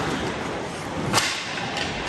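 A single sharp crack, like a hard strike, about a second in, over a steady wash of indoor-arena background noise.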